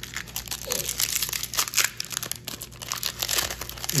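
Foil trading-card pack crinkling and tearing as it is peeled open by hand, a dense, irregular run of crackles.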